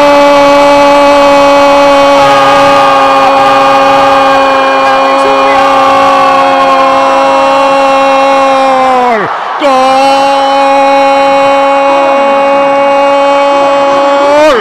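A radio football commentator's long, sustained shout of "gol" for a goal, held on one steady pitch. About nine seconds in the note sags and breaks for a quick breath, then the held shout picks up again on the same pitch.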